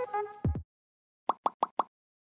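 Background music ending with a low hit about half a second in. After a moment of silence come four short pop sound effects in quick succession, one for each icon popping onto the screen in an outro animation.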